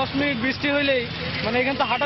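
A man speaking, with vehicle traffic running behind him.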